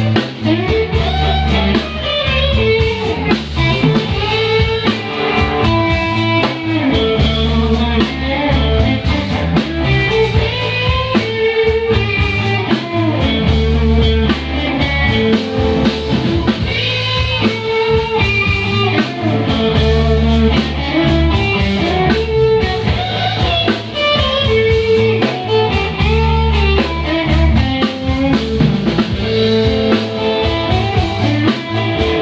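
Live blues band playing: electric guitars over a drum kit, with a steady beat and a strong bass line.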